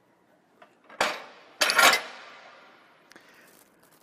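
Metal clanks as the forklift's swing-out LP tank bracket is swung back into place and latched: a sharp knock about a second in, then a louder clank that rings on and fades, with a few faint clicks after.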